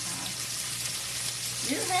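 Meatloaf patties sizzling steadily in a frying pan on high heat, with a faint crackle and a low steady hum underneath.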